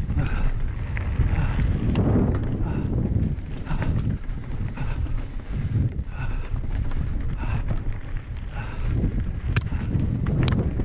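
Wind buffeting the microphone of a camera moving fast along a dirt singletrack, with the rattle and scattered sharp clicks of bike tyres over loose dirt and stones.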